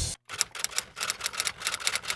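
Typewriter keystroke sound effect: a quick, uneven run of key strikes, starting just after loud music cuts off abruptly.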